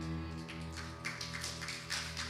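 A band's final chord on electric and acoustic guitars, ringing and fading away, with scattered light taps from about half a second in.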